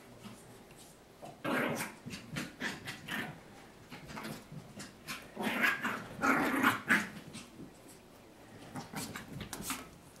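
A Maltese puppy growling in short, irregular bursts while playing with a ball, loudest about halfway through, with a few light clicks near the end.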